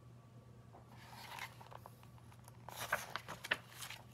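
Picture book page being turned: a soft paper rustle about a second in, then a quick run of crackles and flaps near the end as the page comes over.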